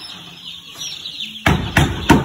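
A crowd of day-old broiler chicks peeping continuously, many short falling peeps overlapping. About one and a half seconds in, a run of loud sharp knocks starts, about three a second.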